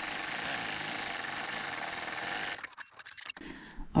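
Viking computerized embroidery machine stitching the edge-run underlay for satin stitches: a rapid, steady run of needle strokes that stops about two and a half seconds in, followed by a few faint clicks.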